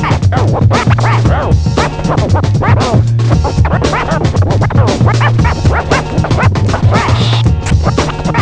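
Turntable scratching: a vinyl record pushed back and forth by hand on a DJ turntable, making rapid rising and falling sweeps, cut in and out with the mixer, over a beat with steady bass notes.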